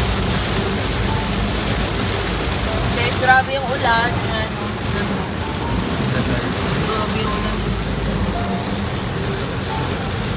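Heavy rain pelting a moving car and the hiss of its tyres on the wet road, heard from inside the cabin as a loud, steady noise. A voice cuts in briefly about three seconds in.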